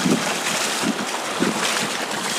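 Small waves washing onto a flat sandy beach, a steady hiss of surf, with wind buffeting the microphone.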